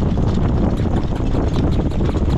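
Heavy wind buffeting the microphone on a moving jog cart. Through it, the horse's hooves strike the dirt track in a quick run of clicks several times a second.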